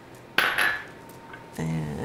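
A single sharp clink of a small glass prep bowl against a hard surface, ringing briefly. A short vocal sound follows near the end.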